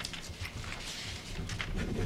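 Paper rustling and light irregular clicks and taps from papers being handled at a table with microphones, over a steady low room hum.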